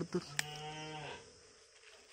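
A cow mooing once, a single steady call about a second long, with a brief sharp click partway through it.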